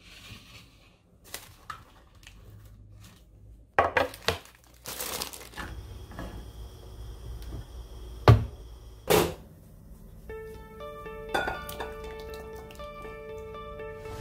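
Kitchen handling sounds: scattered knocks and clatter of a plate and a frying pan being moved on the counter and stove, with two loud thumps a little after eight and nine seconds in. Light background music with a melody comes in about ten seconds in.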